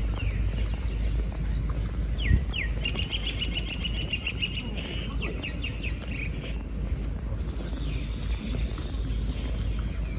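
A bird singing: two quick falling notes, then a fast high trill lasting about three and a half seconds, over a steady low rumble and one soft thump.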